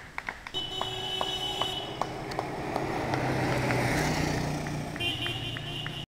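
A group of cross-country mountain bikes rushes past on pavement: the noise of tyres and drivetrains builds to a peak about four seconds in and then eases. A low steady hum and light ticks run underneath.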